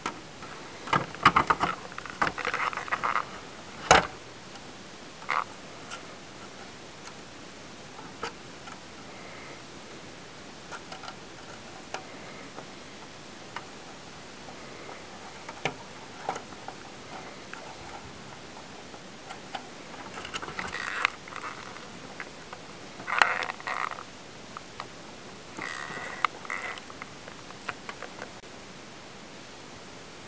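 Hands fitting a ribbon cable and plastic plugs to a projector's circuit board: scattered sharp clicks and short rustles over a steady hiss, with the sharpest click about four seconds in and more small clusters of clicks later on.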